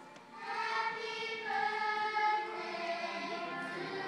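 A choir singing a Christmas song over music, with long held notes; the sound dips low at the very start, then the voices swell back in.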